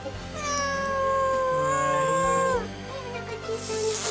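Kitten giving one long meow, held steady for about two seconds and dropping in pitch as it ends, followed near the end by a short hiss.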